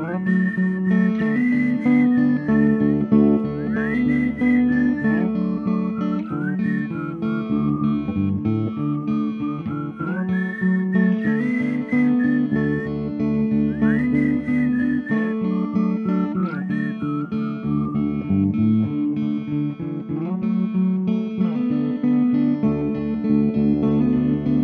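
Instrumental passage of an indie rock song: strummed guitars and bass holding chords under a high lead melody that glides up and down between notes, with no vocals.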